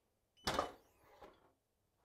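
Clamshell heat press opening after a pre-press: a short clunk about half a second in as the upper heat platen is released and lifts, with a brief high timer beep under it, and a faint knock shortly after.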